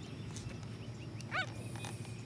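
A bulldog puppy gives one short, high-pitched yelp about a second and a half in, over faint bird chirps and a steady low rumble.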